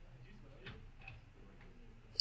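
Near silence: quiet room tone with two faint clicks, about two-thirds of a second and a second in.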